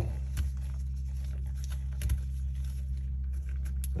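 A few faint light metallic ticks and clicks as a small hex key turns a socket head cap screw into a pistol's rear sight, over a steady low hum.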